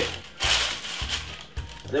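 Greaseproof paper crinkling as gloved hands press it into a baking tray, with the loudest rustle about half a second in.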